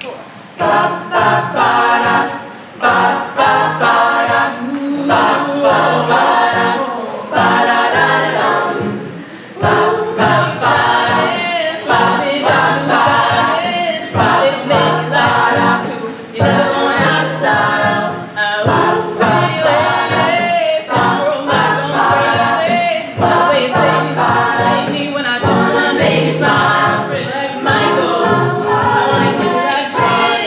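A cappella group singing in harmony: a female lead singing into a microphone over several backing voices, with a rhythmic low part and short percussive strokes throughout.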